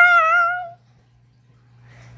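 A child's high-pitched, wavering meow-like squeal lasting under a second, made in play for a toy cat.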